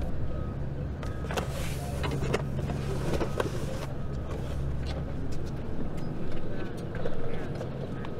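A cardboard box knocks and scrapes as it is loaded into a car's open hatchback, in several short separate knocks. Under them runs a low, steady motor rumble, whose low part drops away about halfway through.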